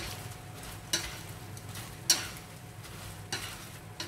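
Whole shrimp sizzling in a stainless steel frying pan as they are stir-fried with wooden chopsticks, the chopsticks knocking against the pan four times about a second apart.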